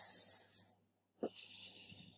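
A person breathing into a close microphone: two short, hissy breaths, one at the start and a weaker one about a second later, over a faint steady low hum.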